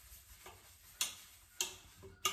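Dishes clinking lightly as they are hand-washed at a sink: a few short sharp clinks, the two clearest about a second in and half a second later.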